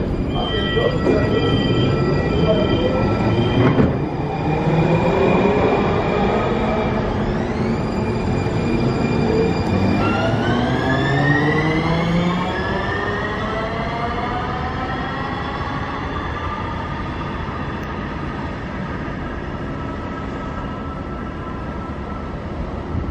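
Siemens S70 light rail vehicles' electric traction drives whining, the pitch gliding up and down in several sweeps as trains pull away and come in. A short beep repeats several times in the first few seconds.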